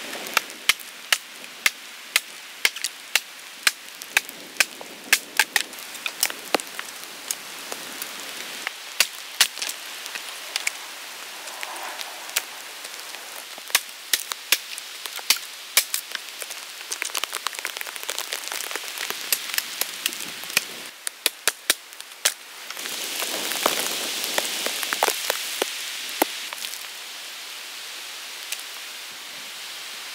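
Rain falling in a forest, a steady hiss with many sharp, irregular ticks of drops striking close by. The hiss grows louder for a few seconds about three-quarters of the way through.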